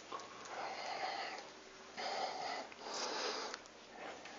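A person sniffing and breathing close to the microphone, three soft breaths over a few seconds.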